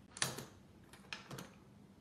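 A few light clicks and knocks of small objects or tools handled on a work table: a sharp one just after the start, then three quicker, softer ones about a second in.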